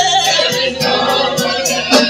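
Gospel worship music: several voices singing together over instrumental backing with a steady beat.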